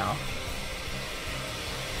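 Hot water running from the tap into a full bathtub: a steady, even rush.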